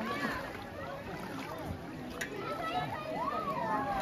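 Voices of several people talking in the background, a babble of conversation, with one voice drawn out in a long call near the end.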